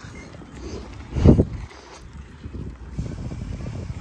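Wind rumbling on the microphone, with one low thump about a second in.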